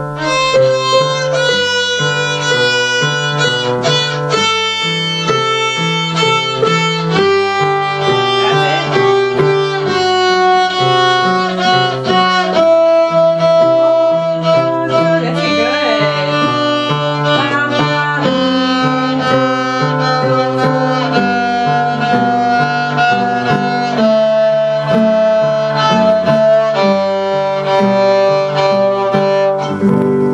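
A violin playing a melody in held notes, with a piano accompaniment repeating low chords underneath, the piece ending near the end.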